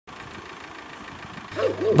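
A steady low background noise with no distinct events, then a voice starts speaking about one and a half seconds in.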